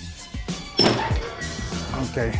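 Background music with a deep bass beat. A little under a second in, a louder thunk with a brief metallic ring as a manual clamshell heat press is released and swung open.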